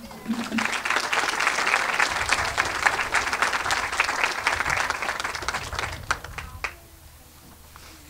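Audience applauding. It starts about half a second in, keeps up for several seconds, and dies away after about six seconds with a few last claps.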